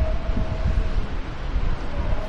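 Steady low rumble with a fainter hiss over it, with no rhythm or distinct events; a faint steady hum fades out in the first second.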